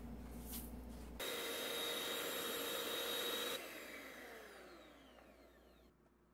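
Electric hand mixer whipping egg whites and sugar into meringue. It starts abruptly about a second in and runs steadily with a high whine, then is cut off and winds down with a falling pitch, fading away.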